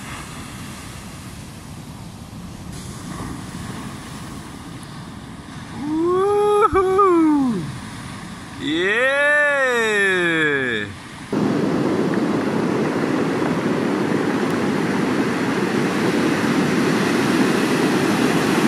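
Ocean surf breaking on a beach, a steady rushing noise that jumps abruptly louder about eleven seconds in. Over it, about six and nine seconds in, come two long drawn-out calls from a voice, each rising and then falling in pitch.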